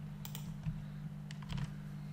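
Computer keyboard keys tapped a few times, separate clicks spread irregularly, over a steady low hum.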